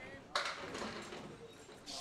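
A sudden clatter of candlepins and ball on a bowling lane about a third of a second in, fading over about a second and a half.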